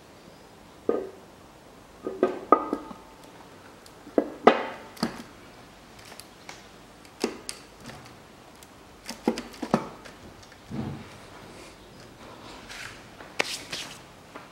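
Aluminium cylinder head being set down and worked into place on the engine block over a new head gasket: a dozen or so irregular metal clunks and knocks, some ringing briefly.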